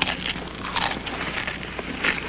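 Cartoon eating sound effects: a boy munching food in a series of short, crunchy bites.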